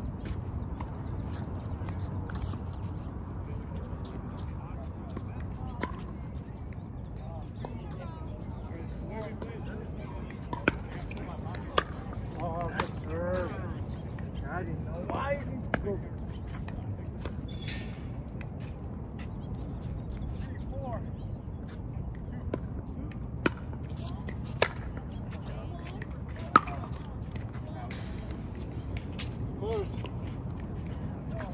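Pickleball paddles striking the hard plastic ball: a few sharp pops, two close together about eleven seconds in and three more later, over steady low outdoor background and faint distant voices.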